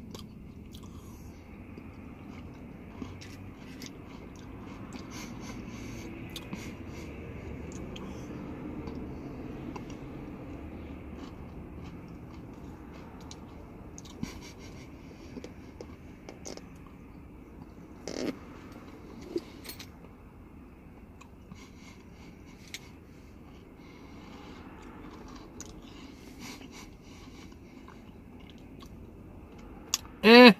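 A person chewing a mouthful of Oreo Blizzard ice cream: soft, quiet chewing and mouth clicks over a low steady background hum, with a short voiced hum a little past halfway.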